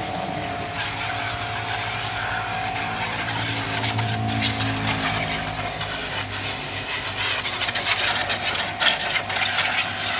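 Electric high-pressure washer running, its motor humming steadily while the water jet hisses and spatters against a scooter and the concrete.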